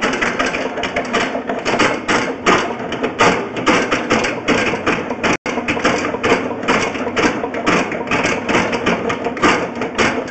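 Rapid, irregular clattering and scraping of a sewer push camera being fed along a drain pipe that holds sand and sediment. The sound drops out for an instant about halfway through.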